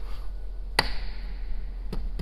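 A hand knocking once on the fake exhaust tip set into the car's rear diffuser, a sharp tap that rings briefly, with a fainter tick near the end.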